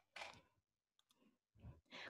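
Near silence on a video-call audio line, with two faint brief sounds: one just after the start and one shortly before the end.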